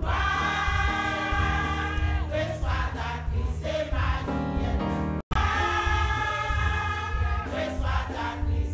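Women's church choir singing in harmony, holding long notes over a steadily pulsing bass accompaniment. The sound cuts out for an instant a little past the middle.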